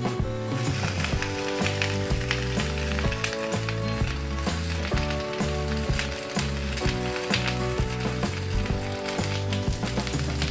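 Boiling water sizzling in a steamer pan just after its glass lid is lifted off, over background music.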